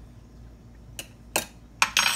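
A metal spoon knocking against a small metal measuring cup of ground white pepper a few times in the second half, the last and loudest knocks ringing briefly.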